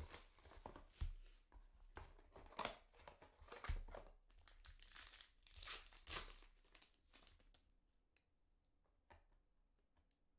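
A box of basketball card packs being opened by hand and a pack's wrapper torn open and crinkled: irregular crinkling and tearing sounds that die away over the last few seconds.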